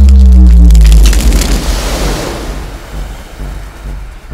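A movie-trailer sound-design hit: a sudden, very loud deep boom with a slightly falling low tone for about a second, fading into a noisy wash over the next few seconds.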